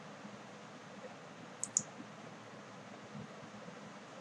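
Two quick clicks of a computer mouse button about a second and a half in, over a faint steady hiss.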